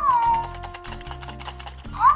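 Electronic baby-dumpling toy giving a short, high, squeaky voice call that swoops up and then holds, near the start, with another starting at the very end, over soft background music.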